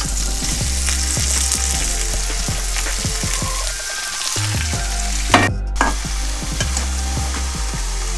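Food frying in a hot pan, a steady sizzle, close to burning. A sharp knock comes about five and a half seconds in.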